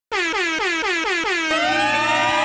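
DJ air horn sound effect: a quick run of short blasts, each dropping in pitch, about four a second, then a held final blast with several tones gliding down.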